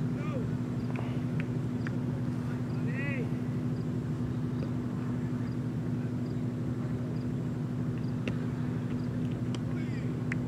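A steady low mechanical hum throughout, with two short called-out voices, one at the start and one about three seconds in.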